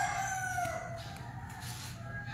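The tail of a rooster's crow: one long call that falls in pitch and fades out about a second in, over a steady low hum.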